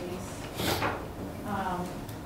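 A brief scraping rustle of something being handled, about halfway through, then a short vocal sound near the end.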